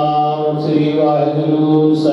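Sikh devotional chanting over a microphone, long notes held steady on one pitch.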